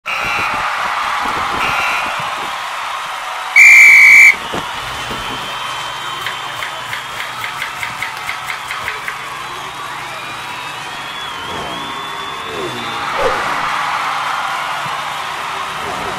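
A start signal: one loud, high, steady whistle blast, under a second long, about three and a half seconds in. A few seconds later comes a quick run of about a dozen sharp ticks.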